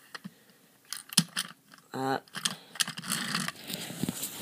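Light clicks and rattles of a plastic toy train engine being handled, with a few sharp clicks about a second in and a run of small clicks in the second half.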